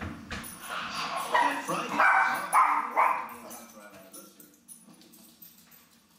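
Small dog barking several times in quick succession, the loudest barks coming between about one and three seconds in, then quieting down.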